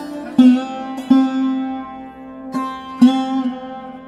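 Slow, calm plucked-string instrumental music: three single notes are plucked and left to ring out over a sustained drone.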